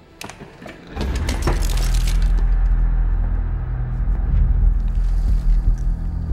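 Dramatic TV score and sound design: a sudden crashing hit about a second in, then a sustained deep rumbling drone.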